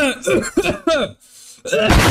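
Short vocal sounds from a voice, then a brief pause; right at the end a loud explosion sound effect begins.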